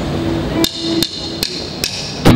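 Drumsticks clicked together four times at an even tempo, about two and a half clicks a second: the drummer's count-in for the band. A held low note sounds under the first clicks and dies away.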